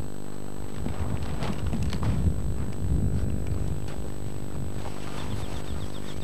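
An engine running steadily, a low even hum with some rumble underneath.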